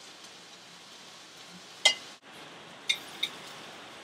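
Eggs sizzling in a frying pan, a steady soft hiss, with a sharp utensil click about two seconds in and two lighter clicks near the end.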